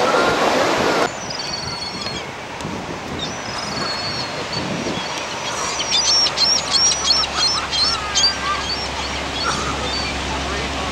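Surf noise that cuts off abruptly about a second in, leaving a quieter background with birds calling. In the second half the birds give a rapid run of high chirps.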